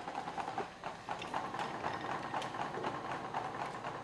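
Goat milking machine running in the milking parlour: a steady hiss with faint, irregular clicks as the milking clusters work and are handled.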